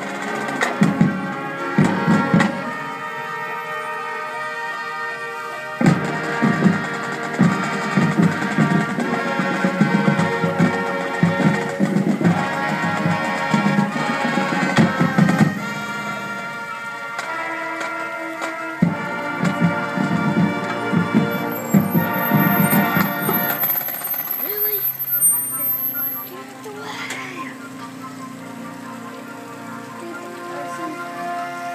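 Marching band playing: brass chords over a steady drum beat. It grows quieter and softer in the last few seconds.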